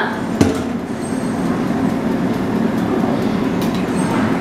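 A steady low mechanical rumble, like a running kitchen appliance, with a single knock about half a second in and a few faint clicks later.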